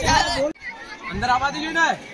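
Several voices talking and calling out at once, with an abrupt break about half a second in.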